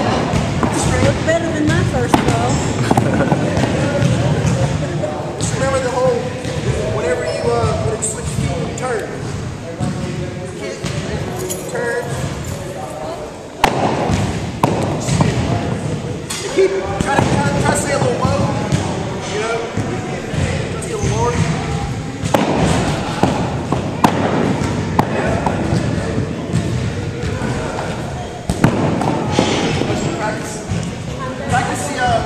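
Indistinct talking of several people in an echoing gym, broken by a few sharp thuds of shot put balls landing on the wooden floor, one of them a sudden loud knock about halfway through.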